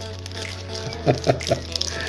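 Background music, with a man's short laugh of three quick pulses about a second in.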